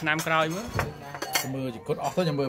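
Metal spoons clinking against ceramic plates and bowls as food is served, a few sharp clinks about a third of the way in and again just past the middle.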